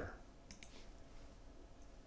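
Two quick computer-mouse clicks about half a second in, over faint room tone.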